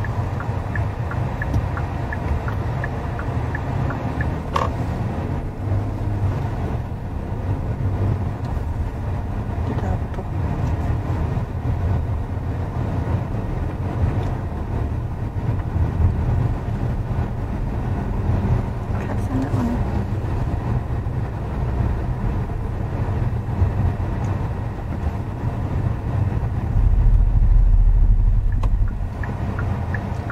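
Cabin noise of a Hyundai Palisade on the move: a steady low rumble of tyres and drivetrain. Near the end the low rumble grows louder for about two seconds.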